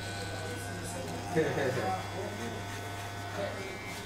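Electric hair clippers running with a steady low buzz, held in the barber's hand and not yet cutting.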